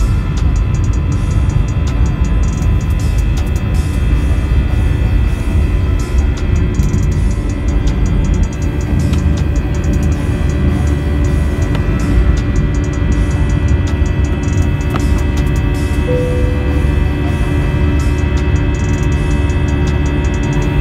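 Airbus A319 heard from the cabin on its takeoff run and climb-out: the jet engines at takeoff power with a steady, loud low rumble. Background music plays along with it.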